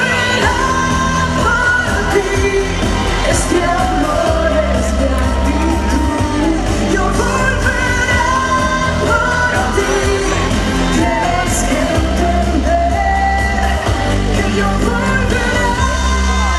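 A woman singing a Spanish-language pop ballad live into a microphone over amplified pop backing music with a heavy bass line, heard through stage speakers.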